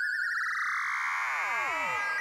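A Eurorack synthesizer oscillator tone amplitude-modulated through the Intellijel Dual VCA 1U by a second Dixie oscillator whose rate is swept upward. The steady tone first wobbles, then splits into a spray of metallic sideband tones, some gliding up and many gliding down, as the modulation reaches audio rate.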